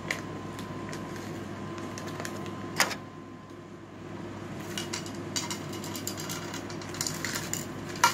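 Plastic packaging being handled and opened: scattered crinkles and clicks, with one sharp click about three seconds in and a denser run of crackling in the second half, over a steady room hum.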